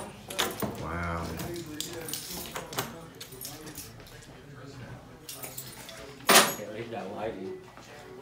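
Keys on a lanyard jangling and a door latch clicking as a room door is unlocked and pushed open, with brief voices. A single sharp, loud knock comes about six seconds in.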